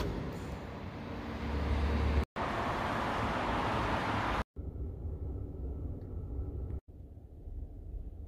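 Background noise in a parking garage at a Supercharger: a low rumble, then a steady broad hiss, then quieter noise with a faint steady tone, each part ending in an abrupt cut to silence.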